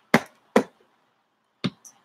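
Handling knocks from the camera being grabbed and shifted on its mount: three short, sharp knocks, two close together near the start and one near the end, with a faint tick just after the last.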